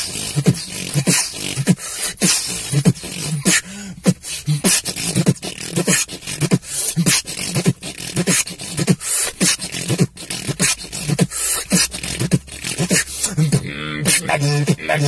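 Solo human beatboxing: fast, dense percussive mouth hits, kick- and snare-like, layered over low bass tones.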